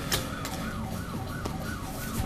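A faint siren wailing, its pitch sliding down and back up about once a second, with a couple of light clicks over it.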